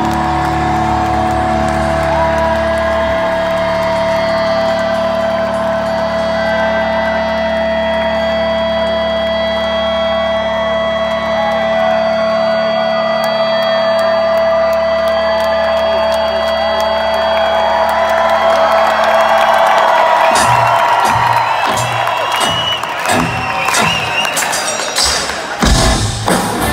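Live rock concert sound: a sustained droning chord holds over the PA while the crowd cheers and whoops. About three-quarters of the way through, the drop-out of the drone gives way to pounding drum-kit hits, with the crowd still cheering.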